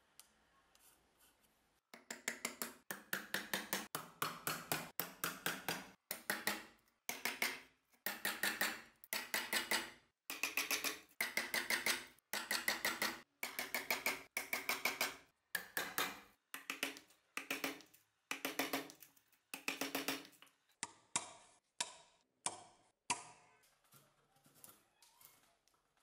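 Mortise chisel driven into a wooden board by rapid mallet blows, chopping out a mortise. The blows come in quick bursts of several strikes with short pauses between, each strike with a hollow woody ring.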